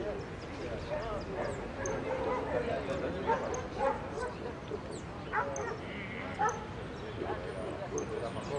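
Caged jilguero (saffron finch) singing in short, faint, high chirps and notes over crowd chatter, with a dog yipping now and then, louder about five and a half and six and a half seconds in.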